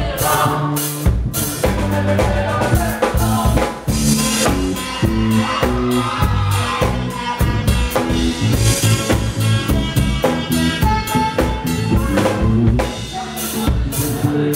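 Live band playing a rock song: a drum kit keeps a steady beat under electric bass, with voices singing over it.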